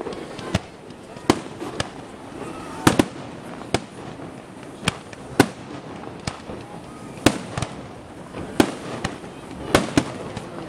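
Aerial fireworks display: shells bursting overhead in sharp bangs, about a dozen in ten seconds at irregular spacing, some louder and closer together than others.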